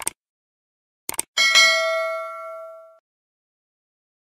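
Subscribe-button animation sound effect: a short click, then two quick clicks about a second in, followed by a bright bell ding that rings with several pitches and fades out over about a second and a half.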